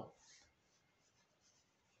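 Near silence: faint room tone with a light hiss.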